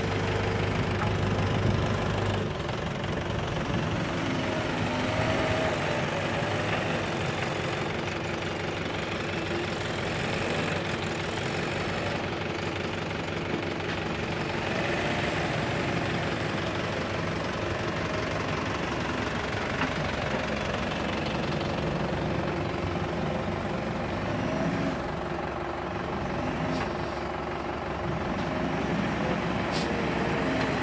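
JCB 3DX backhoe loader's diesel engine running steadily under load while the machine digs and pushes earth, its note shifting now and then as the load changes.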